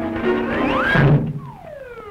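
Early-1930s cartoon soundtrack: band music with a note that slides up, a thunk just after a second in, then several notes sliding down, following the action of a stack of plates.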